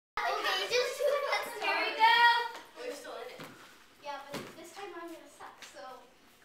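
Girls' voices talking and calling out, loudest in the first two and a half seconds with a high drawn-out call about two seconds in, then quieter scattered chatter.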